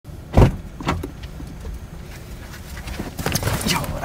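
Sounds inside a car cabin: a loud thump about half a second in and a lighter knock soon after, over a steady low rumble, with small clicks and rustling near the end.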